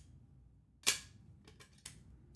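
One sharp plastic click a little under a second in, followed by a few faint light ticks, from the mechanism of a 3D-printed flare gun replica being worked by hand.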